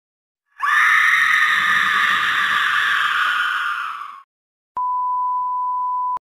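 Microwave oven running with a steady hum that fades out after about three and a half seconds, followed by one long single-pitched beep near the end.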